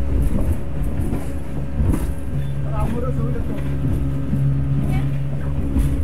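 Inboard engine of a small river motorboat running at a steady cruising speed, a constant low drone.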